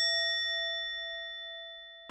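A single struck bell-like chime ringing out and fading away steadily, clean with no background sound: an added sound effect.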